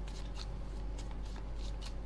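A deck of playing cards being shuffled by hand: soft, scattered flicks and slaps of cards against each other, over a low steady hum.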